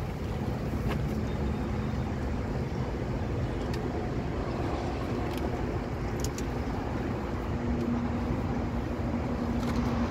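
A motor vehicle's engine running, a steady low rumble with a faint hum that grows a little stronger in the second half, with a few light clicks over it.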